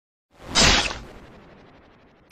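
A whoosh sound effect that swells to a hit about half a second in, with a low boom underneath, then fades away over the next second and a half.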